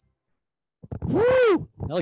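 A single drawn-out vocal exclamation about a second in, its pitch rising and then falling, after a moment of silence; speech follows right after.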